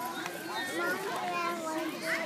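Background voices of several people, children among them, talking and calling over one another.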